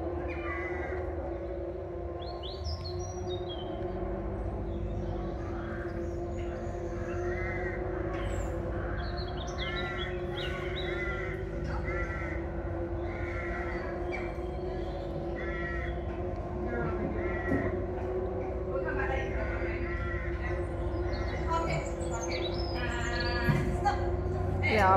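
Crows cawing repeatedly, short harsh calls coming in clusters about once a second, over a steady hum.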